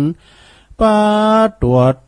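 A monk's voice chanting Buddhist dharma verse in a melodic, long-held recitation: a sung note ends, a short breath, then another drawn-out syllable.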